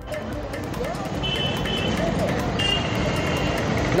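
Busy street noise of a crowd and traffic, with a high steady tone sounding twice, about a second in and again near three seconds.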